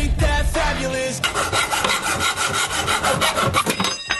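Background music, then from about a second in a hacksaw cutting through a drawer synchronisation rod in rapid, even strokes.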